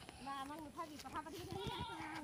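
Goats bleating faintly: several short, wavering calls one after another.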